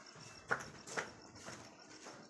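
Two light knocks about half a second apart, the first louder, followed by fainter taps.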